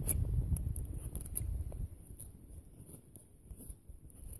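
Very sharp handmade bushcraft knife whittling a piece of wood: scattered small scrapes and clicks of the blade taking shavings, over a low rumble that fades away over the first two seconds.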